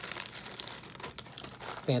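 A clear plastic zipper storage bag crinkling as it is handled, with irregular short crackles.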